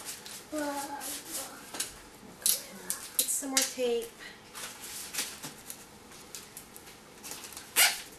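Adhesive tape and paper being handled on a cardboard oatmeal canister: crinkling and pressing, with a loud, sharp rip of tape near the end. A high-pitched voice makes two short sounds in the background.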